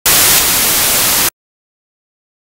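A loud burst of static hiss, about a second and a half long, that cuts in and cuts off abruptly, with silence on either side.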